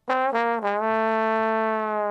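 Solo trombone playing a short falling figure, two quick notes sliding down into a long held note.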